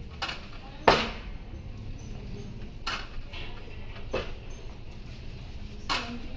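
Metal weight-stack plates of a cable pulldown machine clanking with each rep: five short knocks at uneven intervals, the loudest about a second in.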